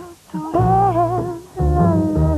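Music: a slow melody with a wavering, vibrato-laden line over low plucked double bass notes.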